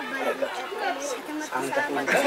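Crowd chatter: many voices of a group of students talking over one another, with no single clear speaker.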